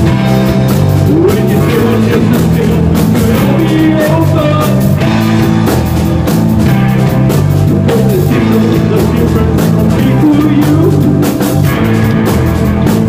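Live psychedelic post-punk rock played loud: bass guitar and electric guitar with heavy reverb over a steady drum beat.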